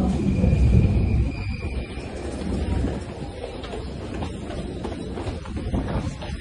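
Underground station ambience heard through a phone microphone: a heavy low rumble, loudest in the first second or so, with a faint steady whine over the first two seconds, then hiss and scattered footsteps as the walker heads down tiled stairs.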